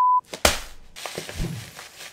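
A steady high beep cuts off just after the start, then a sharp thunk about half a second in. A soft grainy rustle with small ticks follows: rolled oats poured from a bag into a ceramic bowl.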